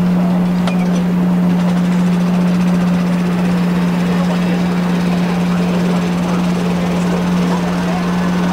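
A loud, steady low hum that holds one pitch, over the general chatter of a stadium crowd.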